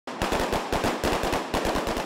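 Automatic rifle fire from AK-style rifles: a rapid, continuous string of loud shots, about ten a second.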